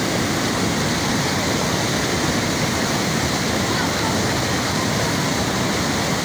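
Floodwater rushing steadily over and around a submerged road bridge: a constant, even noise of fast-flowing, high river water.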